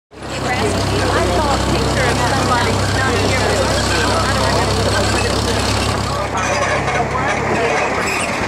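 Tractor engine running steadily with a low hum, under people's voices talking.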